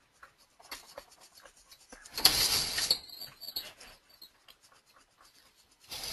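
A pen stroke scratching on a writing surface for under a second, about two seconds in, amid light taps and clicks.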